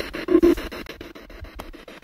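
SB7 spirit box sweeping through radio stations: a rapid, even chop of static with a brief fragment of sound about half a second in.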